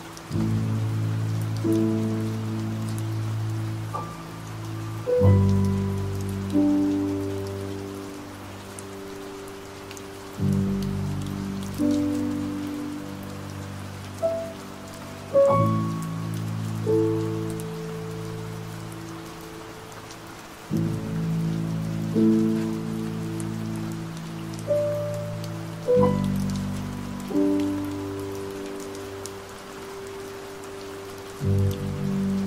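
Slow, soft piano chords, struck every few seconds and left to fade, over steady rain.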